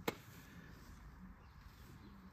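A single short click right at the start, then a faint, steady low background.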